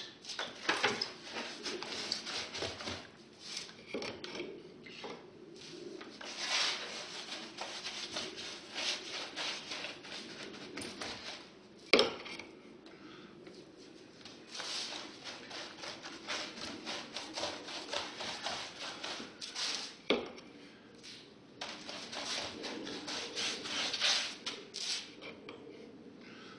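Paintbrush scrubbing Gripper primer onto a pink foam board in runs of quick, scratchy strokes. There is a sharp knock about halfway through and another a little later.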